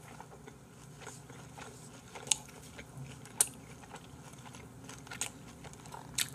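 A person chewing a mouthful of food close to the microphone, with a few short sharp clicks, the clearest about two and three and a half seconds in.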